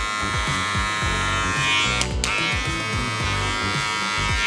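Electric hair clipper buzzing steadily as it cuts the short hair on the side of the head, with a brief break about two seconds in.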